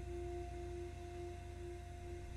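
Soft meditation background music: one steady held tone with a fainter tone an octave above it, over a low hum.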